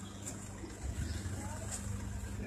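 A vehicle engine idling steadily with a low hum, with faint voices and small clicks and knocks around it.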